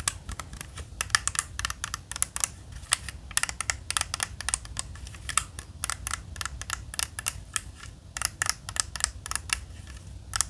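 A 3x3 Rubik's cube being scrambled by hand: its plastic layers click and clack as they are twisted, in quick irregular runs with short pauses.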